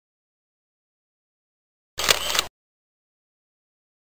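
Dead silence broken once, about two seconds in, by a short camera-shutter sound effect lasting about half a second.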